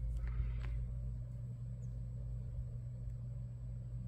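Steady low electrical hum with a faint, thin high-pitched whine above it: the kind of sound he is straining to hear while the power supply is plugged in.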